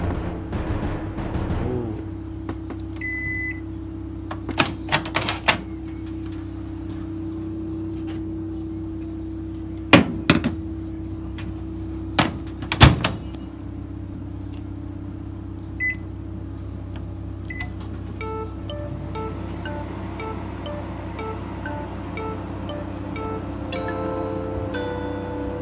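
Panasonic microwave oven humming steadily, with short keypad beeps (one a few seconds in, two more past the middle) and two loud thunks near the middle. About three quarters of the way through, background music with plucked notes comes in.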